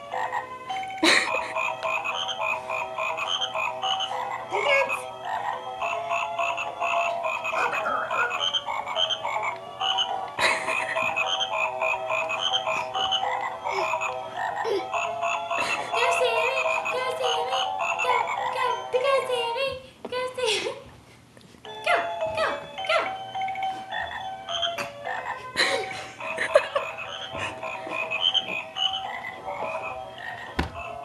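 Battery-operated animated plush frog toy in a Santa suit playing its song, a tune made of repeated croaking calls over steady notes, with a brief break about twenty seconds in.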